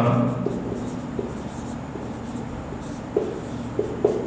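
Marker pen squeaking on a whiteboard as words are handwritten: a run of short squeaks, one for each stroke, with a few closer together near the end.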